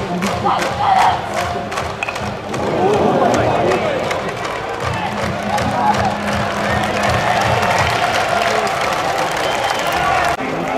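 A school cheering section in the stands: band music with a crowd chanting and shouting in support, loud and continuous.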